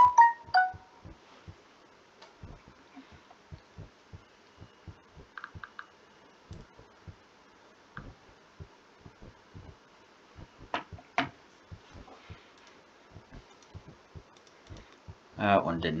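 Faint, irregular clicks and soft thumps from a computer mouse and keyboard at a desk, about one or two a second, with two sharper clicks close together about eleven seconds in.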